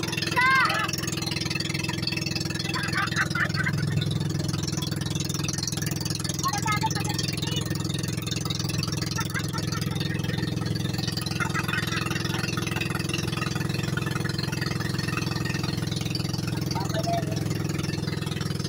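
Engine of a motorized outrigger boat (bangka) running steadily under way, a constant low drone that does not change in speed.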